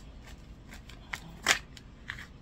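A deck of cards being shuffled by hand: a string of short, irregular snaps and slaps, the loudest about one and a half seconds in.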